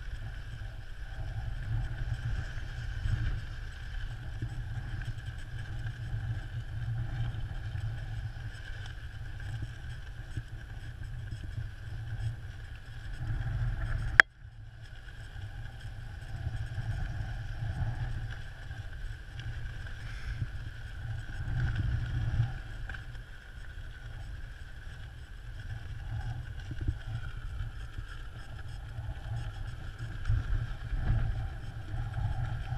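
Wind buffeting the microphone, with an uneven low rumble. A faint steady whine runs under it, and there is a single sharp click about halfway through.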